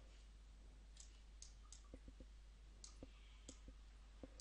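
Near silence with about a dozen faint, short, scattered clicks, made while handwriting is drawn on screen with a computer pen-annotation tool.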